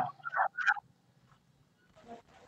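Two short, garbled voice sounds coming through a video-call connection in the first second, then near silence.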